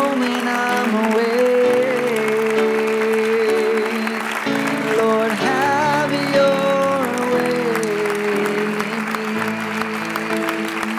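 Slow worship music: held keyboard chords that change every second or two, with a voice singing a wavering melody line at times.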